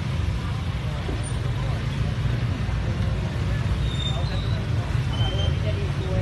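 Motorbikes running on a village street, heard as a steady low rumble, with faint voices in the background.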